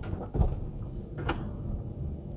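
Power sliding side door of a Mercedes-Benz V-Class van closing under its motor: a steady low rumble as it slides along its track, with a couple of short clicks.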